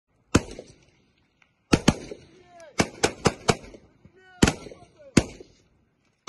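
Small-arms fire from several prone shooters: about nine single gunshots at an irregular pace, some in quick pairs, each with a short echo.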